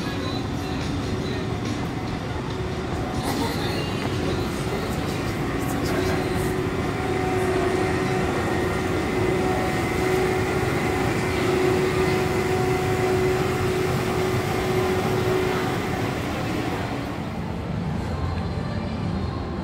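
A train running past with a rumble and a steady whine. It grows louder through the middle and fades near the end, over the murmur of voices nearby.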